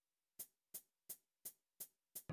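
Faint count-in of short, evenly spaced ticks, about three a second and five in all, setting the tempo just before the band starts the next song.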